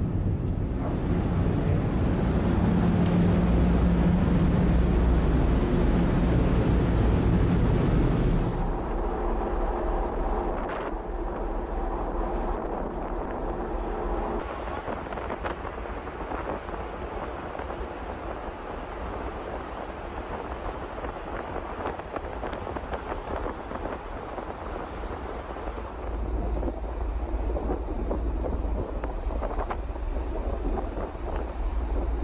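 Ferry's engines drone low with a steady hum inside the ship. About nine seconds in this gives way to wind on the microphone and rushing sea water on the open deck. The wind gusts louder near the end.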